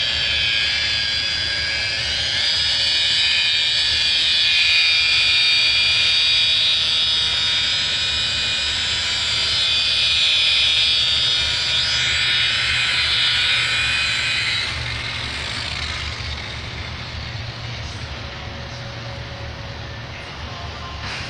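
Rotary polisher with an 8-inch Turbobuff compound pad running, a steady high whine of several tones as it buffs compound on a surface wet-sanded to 3000 grit. The whine stops about fifteen seconds in, leaving a low hum.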